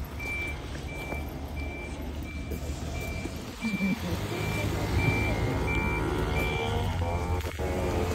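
A large vehicle's reversing alarm beeping, one high tone about every 0.7 seconds, over a steady low engine rumble.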